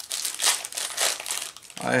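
Clear plastic bag crinkling in several irregular rustles as hands unwrap a metal lathe tool holder from it.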